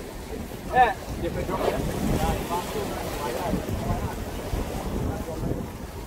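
Wind buffeting the microphone over sea water washing against the rocks, with one short loud shout about a second in and voices calling out after it.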